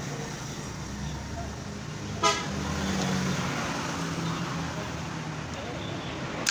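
A single short vehicle-horn toot about two seconds in, over a steady low hum of road traffic.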